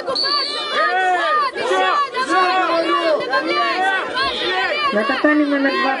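Many voices shouting at once, raised and overlapping, from the crowd around a children's karate bout; a single voice says a word near the end.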